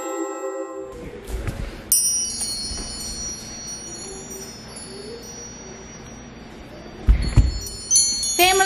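Metal-tube wind chime struck about two seconds in, its many high tones ringing on and slowly fading, rung as the family's signal to gather. Near the end comes a loud low thump, then the chime is struck again.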